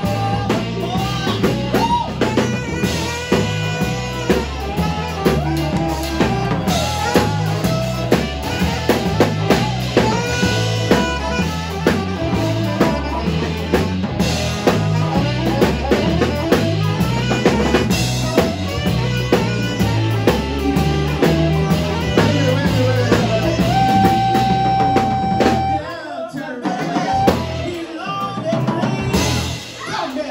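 Live band playing an instrumental stretch: a drum kit beat under bass, with harmonica and saxophone lines and one long held note about three-quarters of the way through. The drums and bass briefly drop out a few seconds before the end.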